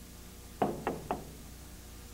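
Three quick knocks about a quarter of a second apart, from a hand rapping on a boxy electronic equipment cabinet.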